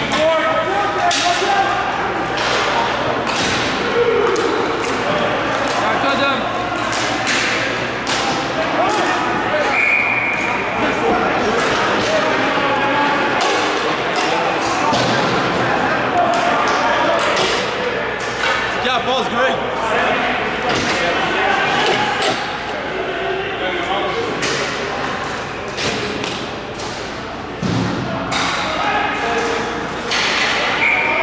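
Ball hockey play in a large, echoing indoor arena: sharp knocks of sticks, ball and boards over the players' shouting and chatter. A short, steady high whistle sounds about ten seconds in.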